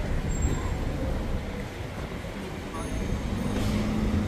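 City street traffic: car engines and tyres running past in a steady low rumble, with indistinct voices of passers-by. Near the end a car passes close, its engine hum swelling.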